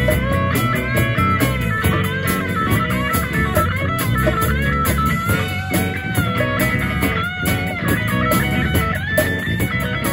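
Live instrumental jam by a small band: a lead electric guitar line that bends up and down in pitch, over bass guitar and a drum kit keeping a steady beat.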